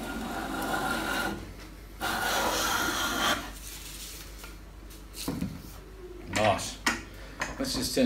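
Restored Stanley bench plane taking two long strokes along a wooden board, each a hiss of the sharp iron shaving off a curl, over roughly the first three and a half seconds. A few knocks and clatter follow as the plane and board are handled.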